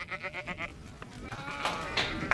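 Sheep bleating: a quavering bleat in the first second, then more calling near the end.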